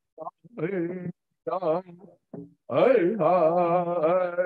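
Two men singing a traditional Nez Perce song: short, wavering vocal phrases with gaps between them, then from about three seconds in a loud, held line with a wavering pitch.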